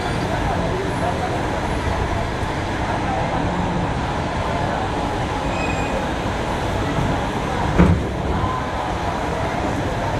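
Express train carriage moving slowly out of a station, heard from aboard: a steady running rumble with platform crowd chatter around it. One sharp knock about eight seconds in.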